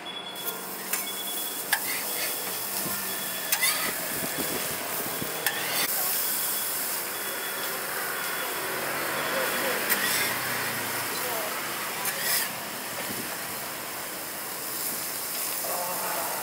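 Eggs, buns and beef patties sizzling steadily on a flat-top gas griddle, the sizzle growing fuller in the middle as raw patties go down, with a few sharp metal clicks from the cook's utensils.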